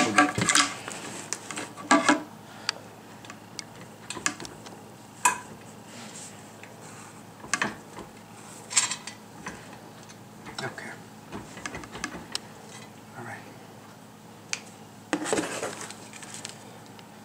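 Irregular light clicks, knocks and clinks of hard parts being handled and set against each other as a mounting plate is fitted onto a radar mount.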